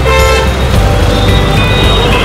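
Dense city street traffic heard from an open auto-rickshaw: a steady low engine and road rumble, with vehicle horns tooting, one just after the start and another near the end.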